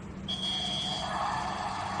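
Electronic game scoreboard sounding its start signal: a steady high beep lasting under a second, followed by a buzzier electronic tone as the 30-second game timer starts.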